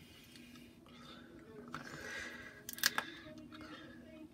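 Faint voice over a low steady hum, with a short cluster of sharp clicks about three seconds in.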